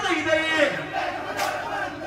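Men's voices shouting together in a call that falls in pitch over the first half second or so, then breaks into a looser mix of voices. A single sharp click comes about one and a half seconds in.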